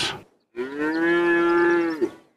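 A cow mooing once: a single long, steady call of about a second and a half.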